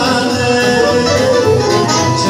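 A man singing into a microphone with a live band of accordion, keyboards and electric guitar, played loud through PA loudspeakers.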